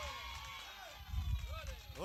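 A brief pause in sermon speech: faint, indistinct voices and a low rumble of room noise, much quieter than the preaching on either side.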